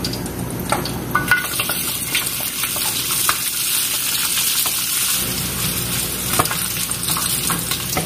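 Shallots, garlic and candlenuts sizzling as they fry in a large wok, stirred with a spatula that scrapes and taps against the pan a few times.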